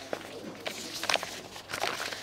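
A pause without speech, filled with a few short, scattered clicks and rustles in a room, about half a second apart.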